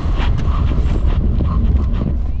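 Vredestein Quatrac Pro all-season tyres on a Suzuki Grand Vitara under full emergency braking from 70 km/h on wet asphalt: a heavy rumble of wind and road noise with hissing water spray, heard from a microphone mounted low on the car's side.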